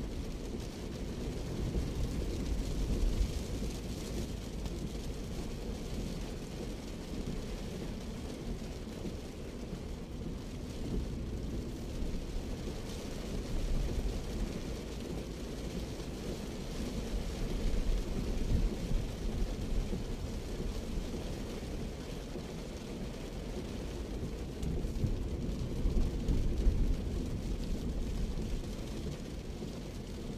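Road noise heard from inside a Daihatsu Terios driving in heavy rain: a steady low rumble of the engine and tyres on the wet road, with a hiss of rain on the car above it. The rumble swells louder a few times, most around a third of the way in, at about two-thirds, and near the end.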